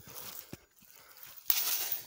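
Footsteps rustling through dry grass, then near the end a sudden loud hiss from a trapped bobcat, lasting under half a second.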